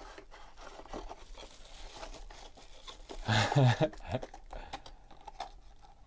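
Faint rustling and tearing of a cardboard trading-card box as it is handled and opened, with a short laugh a little past halfway.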